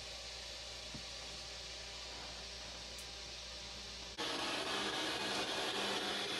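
Quiet room tone: a steady hiss with a faint low hum and a single faint click about a second in. About four seconds in it jumps abruptly to a louder hiss, where the recording switches to another camera's microphone.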